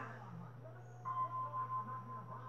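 Faint television audio in a lull in the music, over a steady low electrical hum; a thin held tone comes in about a second in.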